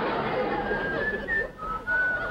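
A man whistling a tune in short, high notes.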